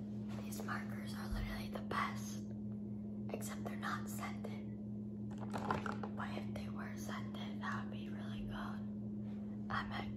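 A young woman whispering in short phrases, with a few small clicks and a steady low hum underneath.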